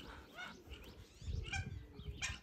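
A few faint, short bird calls, each sliding down in pitch, about half a second in and again near a second and a half in.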